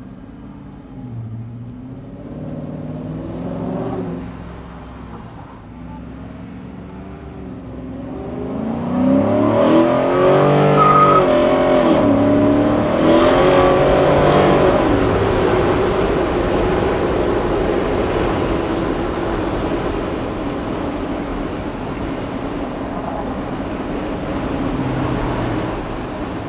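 Coyote 5.0 V8 engine of a 1975 Ford F250 heard from inside the cab, first pulling away at low revs, then accelerating hard about nine seconds in, its pitch climbing and dropping back through the gears, before settling into a steady cruise.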